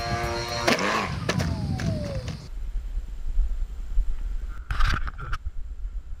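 Electric motor and pusher propeller of a small foam RC airplane buzzing as it flies past, its pitch falling. Then low wind rumble on the microphone, with a short noisy burst near the end.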